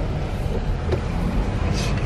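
Steady low engine and road rumble heard from inside the cabin of a slowly moving Nissan car.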